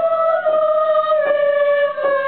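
Teenage sopranos singing a high, sustained unison line that steps down by a half step about every second or less. They are trying to keep each half step as small as possible so the descending passage does not go flat.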